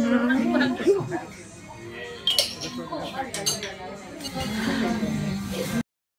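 Metal forks clinking against ceramic dessert plates several times, with people's voices chatting and laughing around a table and music behind. All sound cuts off abruptly just before the end.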